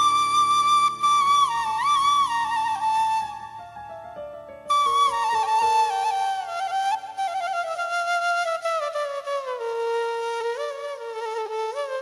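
Bamboo suling flute playing a solo melody with bends and trills over low sustained backing for the first few seconds; it drops away briefly about three seconds in, then returns with a slowly falling phrase.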